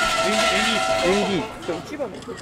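A metal bell ringing: several steady tones over a rattling shimmer, lasting until about a second and a half in, with voices and laughter underneath.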